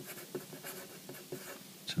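Graphite pencil writing capital letters on paper: a run of short, irregular pencil strokes.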